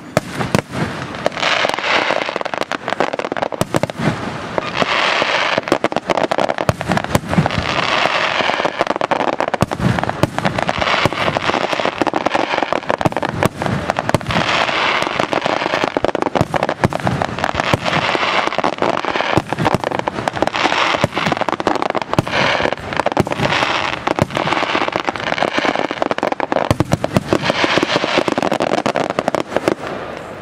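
Aerial firework shells bursting in a dense, continuous barrage, rapid sharp bangs overlaid with waves of crackling every few seconds; it dies down right at the end.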